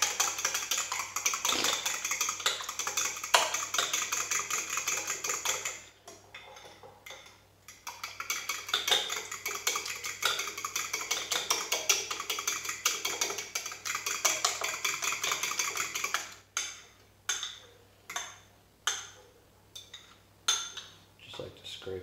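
A fork beating an egg batter in a small ceramic bowl: fast, steady clicking of the fork against the bowl, with a brief pause about six seconds in, then slowing to separate taps for the last few seconds.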